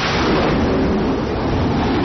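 Carrier jet fighter's engines at full thrust during a catapult launch from the flight deck: a loud, steady roar.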